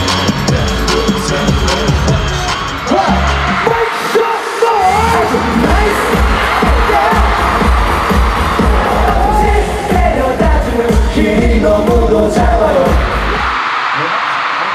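A K-pop song performed live in a concert hall: a loud pop track with a heavy bass beat and a sung vocal line over it. The bass drops out briefly about four seconds in, then comes back, and the music stops shortly before the end.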